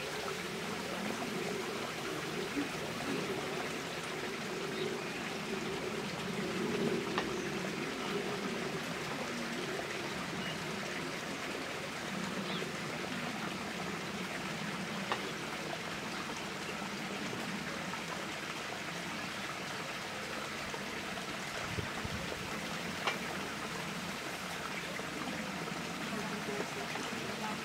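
Steady running and trickling water of a koi pond, with a few faint clicks scattered through it.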